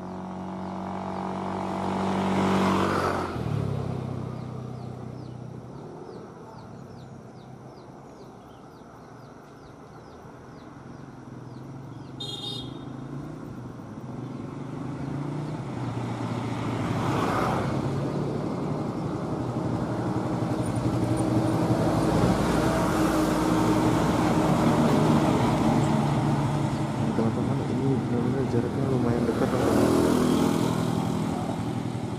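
Motor vehicles passing close by, their engine noise swelling about three seconds in, again around seventeen seconds, and staying loud through the second half, with a short toot about twelve seconds in.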